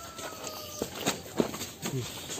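A cow shifting its hooves on a concrete floor while its head is held and its mouth pried open: four short knocks and scuffs in the second half.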